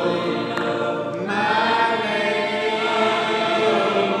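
A church congregation singing together in long held notes, with a new note beginning about a second in.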